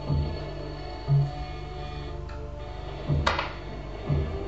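Improvised electronic music played on synthesizer: sustained steady tones over a low, irregular pulsing bass, with one short sharp noise about three seconds in.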